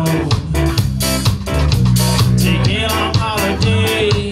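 Live rock band playing: a drum kit keeping a steady beat under held bass notes and electric guitar.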